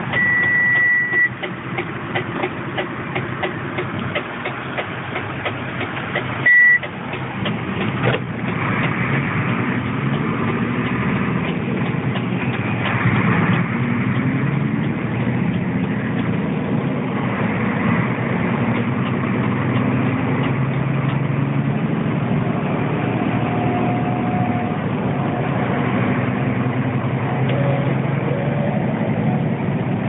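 Mercedes-Benz Actros 2546 truck's V6 diesel engine heard from inside the cab, running steadily and then pulling away and picking up speed. A loud high beep sounds for about a second at the start and again briefly about six and a half seconds in.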